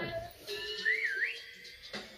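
A short whistled sound effect in a children's TV channel jingle: one tone that glides up, down and up again, lasting about half a second, over faint held high notes, heard from a television speaker.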